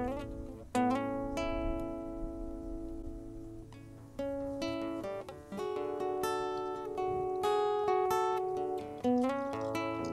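Six-string acoustic guitar playing the slow opening of a folk song, plucked chords ringing on and changing every second or so.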